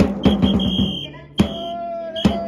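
Cheering-section band music: a sudden start with a quick run of drum strokes, then a single strong drum hit after about a second and a half. Held high, whistle-like notes and a sustained horn note sound over the drums.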